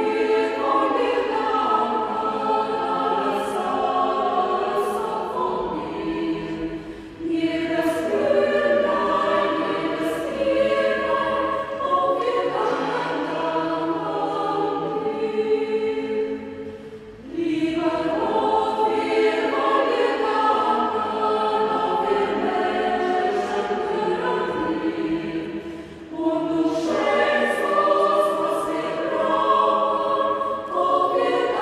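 A mixed choir of women's and men's voices singing together in sustained phrases, with short breaks between phrases about every ten seconds and crisp sibilant consonants.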